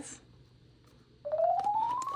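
After a second of near silence, a synthesized sound effect, a single tone gliding steadily upward in pitch, starts about a second in.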